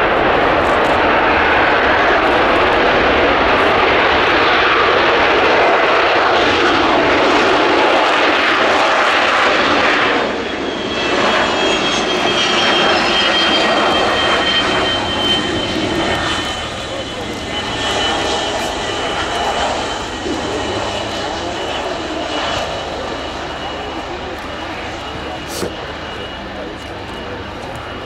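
Boeing 727's three rear-mounted turbofan engines running as the jet rolls along the runway, loud at first. About ten seconds in the noise drops, leaving a high whine that slides down in pitch, and the sound then fades steadily as the aircraft moves away.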